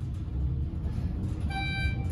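Schindler 400A traction elevator car travelling down with a steady low rumble. About one and a half seconds in, a floor-passing chime sounds a short, steady electronic tone as the car passes a floor.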